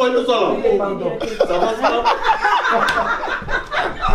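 Several people laughing and chuckling, mixed with bits of talk, as the cast breaks up after a fluffed line.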